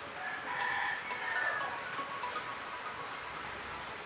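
A rooster crowing once in the background: a single call that starts just after the beginning, lasts under two seconds and falls in pitch toward its end.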